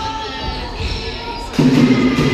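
Basketball bouncing on a wooden gym court amid players' voices, with music over it; the sound turns suddenly much louder and fuller about one and a half seconds in.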